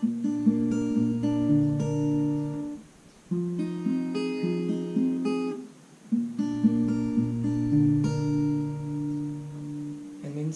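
Steel-string acoustic guitar with a capo, fingerpicked one string at a time through a Dm7 chord and then a G chord. It comes in three short phrases, with brief breaks about three and six seconds in.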